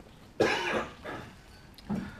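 A man coughs once into his hand, a sudden short cough about half a second in that fades quickly.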